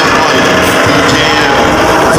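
A vehicle engine running hard and steadily during a mud-pit recovery of a stuck off-road 4x4.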